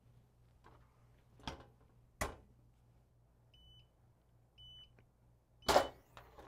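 Heat press: two sharp clacks, then the control's timer gives three short high beeps about a second apart, signalling the end of the dwell time. The last beep comes with a loud clunk from the press's upper platen.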